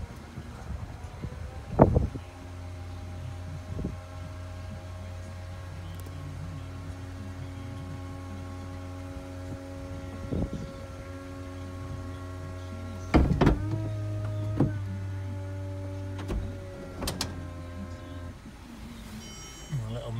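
Peugeot 207 CC's electric folding hard-top closing: a clunk about two seconds in, then a steady motor hum for about sixteen seconds. Around two-thirds of the way through it knocks and the hum changes pitch, with a few more clicks as the roof sections move into place, before the motor stops shortly before the end.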